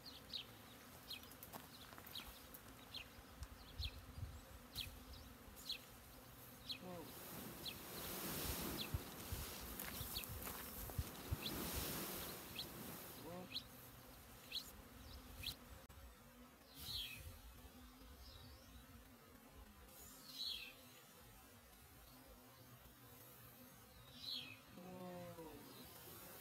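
Honeybee swarm buzzing faintly, with single bees droning past close by now and then, their pitch sliding as they pass. A bird chirps repeatedly, about once a second at first and then more sparsely.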